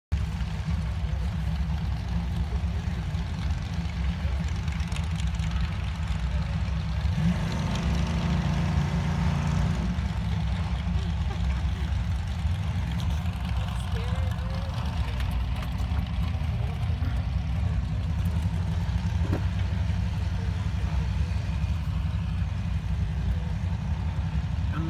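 Low, steady rumble of drag-race car engines idling, swelling from about seven to ten seconds in.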